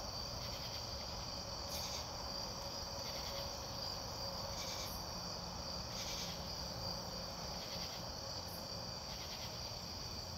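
Night chorus of crickets and other insects: a steady high trill, with louder calls standing out every second or two.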